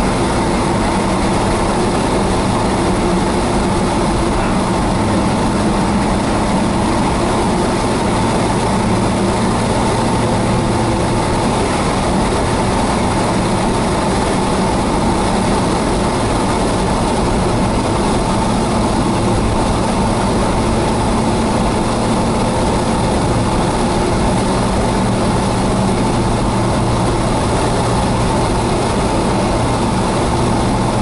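Steady engine hum and road noise heard inside a car's cabin as it cruises along a highway.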